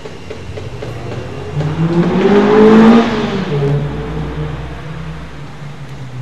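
A car driving past: its engine and road noise swell to a peak about two to three seconds in, the engine note drops in pitch as it goes by, then fades away.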